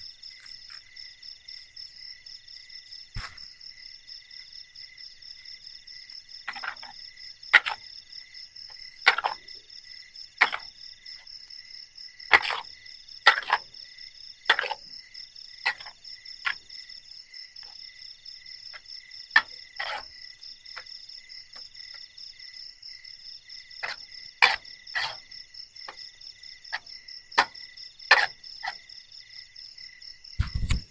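Steady night chorus of crickets and other insects, several overlapping trills, some of them pulsing. Over it come irregular sharp clinks and scrapes of a utensil in a metal pan of instant noodles on a campfire.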